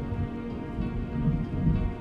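Slow meditation music with long held notes, over a steady rain-like hiss and a low thunder-like rumble that swells in the second half.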